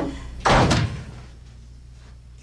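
A single loud slam about half a second in, dying away within half a second.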